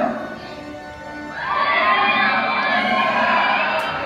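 Recorded playback from an exhibit's sound desk, triggered by a button press: a burst of music with crowd cheering over loudspeakers. It starts about a second in, runs loud and steady, and cuts off suddenly at the end.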